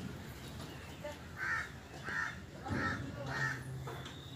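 A crow cawing four times in a steady series, starting about a second and a half in, each caw short and evenly spaced.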